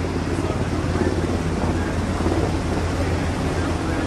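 A Navy H-60 Seahawk helicopter hovering close by, giving a steady low rotor drone with a rushing noise over it.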